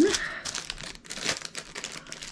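Crinkly packaging rustling and crackling irregularly as it is handled, the packet of a metal cutting-die set being unwrapped.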